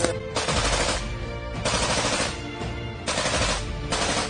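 Bursts of automatic machine-gun fire, each a rapid rattle of shots lasting about a second, three in all, over a faint bed of music.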